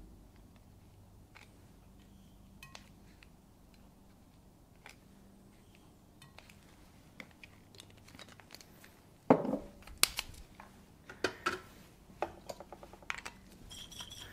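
Lab glassware and plastic bottles being handled: a few faint ticks at first, then a run of sharp clicks and clinks from about nine seconds in. A faint low hum sits underneath.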